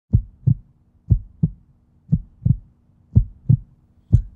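Heartbeat sound effect: four slow double thumps (lub-dub), about one beat a second.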